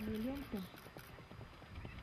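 Hoofbeats of a ridden Icelandic stallion going along the track. A voice talks over them in the first half-second or so.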